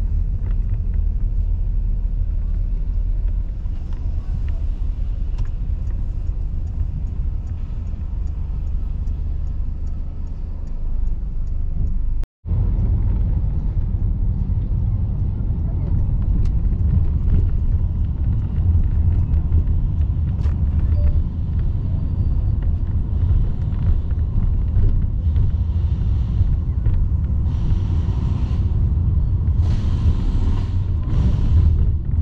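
Steady low rumble of a vehicle's engine and tyres on the road, heard from inside the cabin while driving through city traffic. The sound drops out for a split second about twelve seconds in.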